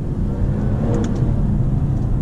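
Jaguar F-Type engine pulling under acceleration, heard from inside the cabin, as the paddle-shifted ZF automatic shifts up from second to third gear.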